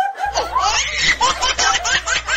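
A group of people laughing loudly together, several voices overlapping in quick repeated bursts of laughter.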